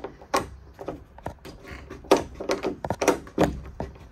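A metal barrel-bolt latch on a Murphy bed being worked by hand, making a string of irregular clicks and knocks, the loudest about two seconds in. The bolt is not yet sliding home into its keeper, and it is hard to do one-handed.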